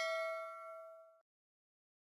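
Notification-bell 'ding' sound effect ringing out with several bright overtones, fading and stopping about a second in.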